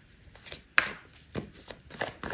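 A tarot deck being shuffled by hand: a few sharp card slaps and clicks, the loudest just under a second in.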